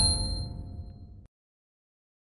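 Tail of an intro sound effect: several bright chime-like tones ring and fade, then cut off abruptly to silence about a second and a quarter in.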